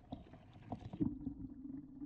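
Wire crab pot knocking and rattling as it is handled in a boat. A steady low hum comes in about a second in.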